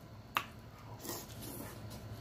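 Close-up eating sounds: a single sharp click as a forkful of seafood stir fry goes into the mouth, followed by soft, quiet chewing.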